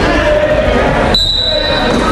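Referee's whistle blown once to start the wrestling match: a steady, high, single-pitched blast that begins suddenly about halfway in and is held for most of a second.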